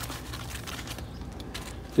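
Faint rustling of a nylon backpack's fabric and drawstring cord as they are handled, over a steady low rumble in the background.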